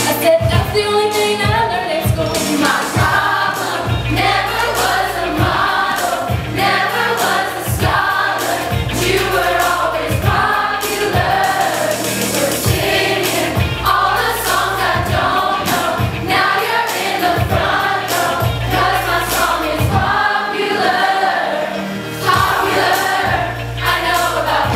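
A large group of voices singing together over a pop backing track with a steady beat.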